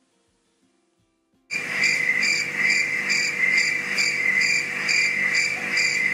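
Crickets chirping, starting suddenly about a second and a half in after near silence: a steady high trill with a higher pulsing chirp repeating about twice a second.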